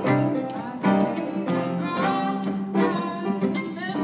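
Live folk music: acoustic guitars playing, with a voice singing long held notes.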